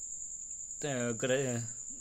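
A steady high-pitched whine runs unbroken throughout, with a voice speaking briefly from about a second in.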